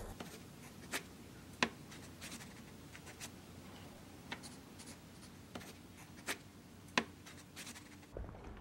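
A low hiss with faint, sharp clicks at irregular intervals, about eight in all, the loudest a little after one and a half seconds and at seven seconds.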